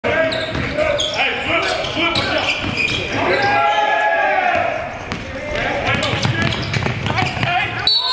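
A basketball bouncing repeatedly on a hardwood gym floor during play, with players' indistinct shouts echoing in the large gym.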